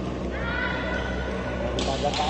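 A badminton shoe squeaking on the court floor in one long high squeal, dipping slightly in pitch as it starts.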